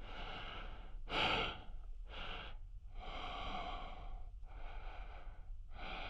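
A man breathing inside a spacesuit helmet: a run of about six breaths, roughly one a second, over a steady low hum.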